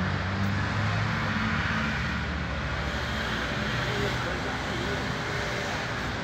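A motor vehicle's low engine hum over steady outdoor traffic noise, fading after the first two or three seconds.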